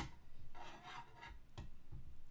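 Handling noise from a small NanoPi R2S mini router and its cables being turned over by hand. A sharp click comes first, then a short scraping rub, and a couple of light knocks about a second and a half in.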